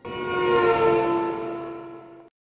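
Short TV programme ident sting: several horn-like tones held together as one chord, sliding slightly down in pitch and fading.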